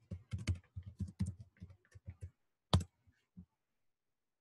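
Computer keyboard typing a password: a quick run of keystrokes, then one louder keystroke a little under three seconds in.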